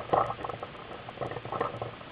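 Irregular footsteps and rustling, close and muffled on a helmet-mounted camera, as the player walks around the fort, with a louder bump just after the start.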